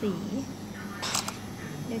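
A woman speaking a word in Thai, then a short scratchy noise about a second in.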